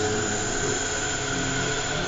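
Three-phase induction motor driving a DC motor as its load, running steadily under fuzzy-logic direct torque control, with a steady hum and whine holding a few fixed tones.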